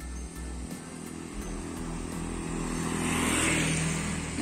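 A motor vehicle passing along the road, growing louder to a peak about three seconds in and then fading, over a steady low hum.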